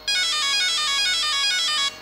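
Castle Mamba Max Pro brushless speed controller playing its confirmation tones through the RC car's brushless motor: a fast, ringtone-like run of stepped electronic notes in repeating sequences, lasting almost two seconds and then cutting off. The tones confirm that the throttle's neutral point has been set and that endpoint programming is complete.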